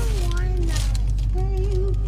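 A quiet voice making soft, wordless sounds over a steady low hum.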